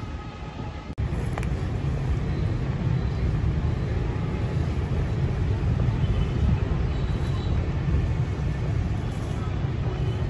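Steady low rumble of distant road traffic in outdoor ambience, jumping up after a brief drop about a second in.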